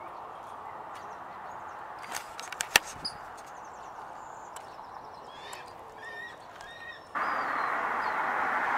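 Outdoor background hiss with a few sharp clicks about two to three seconds in, and several short, faint bird chirps a little before the end. Near the end the background hiss becomes suddenly louder.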